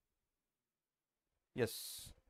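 Near silence, then a man says "yes" about one and a half seconds in, ending in a drawn-out hissing "s".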